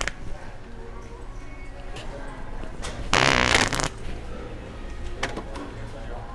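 A loud, raspy fart, under a second long, about three seconds in, over store background noise with a few light clicks.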